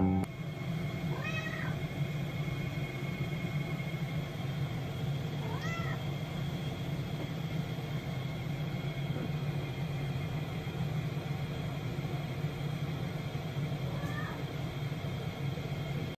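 A domestic cat meowing three times: a call about a second in, another near six seconds, and a fainter one near the end, each short and rising then falling. These are calls to its owner, made when their eyes meet. A steady low hum runs beneath.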